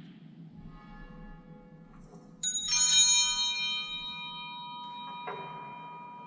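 A small church bell, the sacristy bell that marks the start of Mass, struck a few times in quick succession about halfway through. Its bright, many-toned ring fades slowly over the next few seconds, over a steady low hum in the church.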